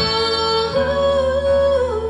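A woman singing held, wordless notes into a microphone over a steady instrumental accompaniment; the note steps up in pitch about a third of the way in and comes back down near the end.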